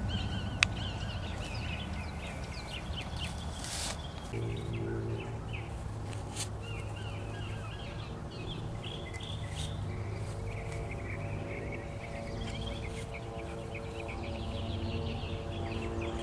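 Outdoor ambience: small birds chirping again and again in the background, with a steady low hum that comes in about four seconds in.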